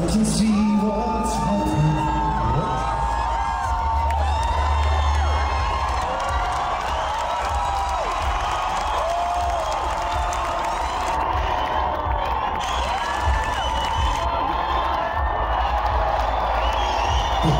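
A concert crowd cheering, whooping and shouting as a song ends just after the start, over a low steady bass sound from the stage.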